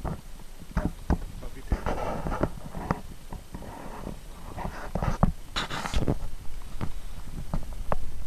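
Handling noise from a kayak in shallow reeds: scattered knocks and clicks against the hull, with two short rustling, splashy bursts, one about two seconds in and a louder one near six seconds.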